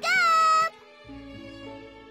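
A young girl calling out in a high, drawn-out voice, cutting off about two-thirds of a second in, followed by soft background music with held notes.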